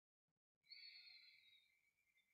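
A faint, long, deep breath through the nose, as in yogic breathing practice. It starts sharply about half a second in and slowly fades away.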